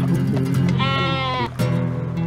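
A goat bleats once, a single wavering call lasting a little over half a second in the middle, over background music.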